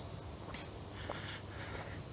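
Faint footsteps on an asphalt path, a soft step about every half second, under quiet outdoor background noise.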